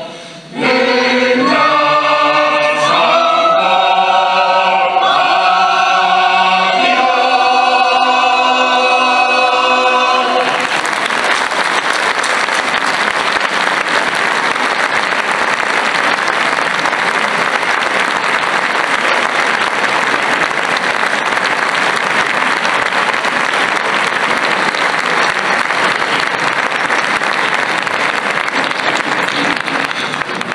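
A mixed choir singing the last held chords of a piece, which ends about ten seconds in. Audience applause follows and runs steadily for the rest.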